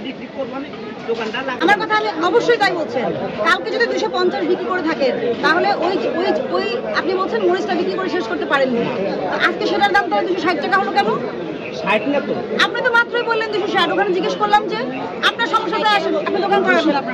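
Several people talking at once in overlapping chatter, with no one voice standing clear.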